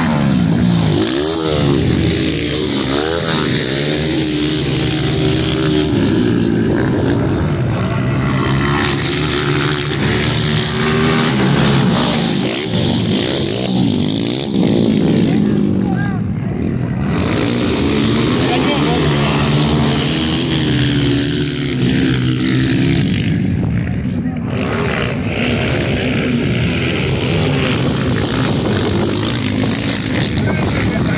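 230cc dirt bike engines revving as the bikes race past on the dirt track, several at once, their pitch rising and falling again and again as the riders accelerate and back off.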